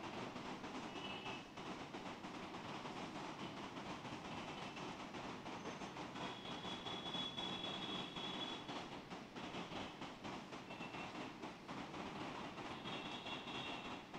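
Faint steady background noise, with a few brief high thin tones now and then.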